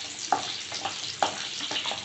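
Whole shallots sizzling in hot oil in a kadai, stirred with a wooden spatula that scrapes and knocks against the pan a few times.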